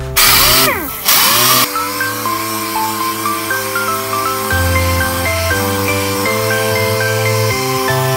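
Pneumatic orbital sander running against a car bumper in two short bursts about a second apart near the start, sanding out flaking paint and scratches ahead of painting. Background music plays throughout and carries on after the sander.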